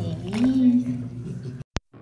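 A bath towel rubs a dog's damp coat while a woman makes a brief voiced sound with no clear words. Near the end the sound cuts off suddenly and a single sharp click follows, the start of a VHS-style tape transition effect.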